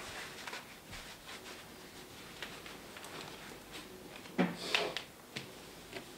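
Quiet rustling of clothing and a tie with scattered small clicks, and a louder brushing and knocking about four and a half seconds in.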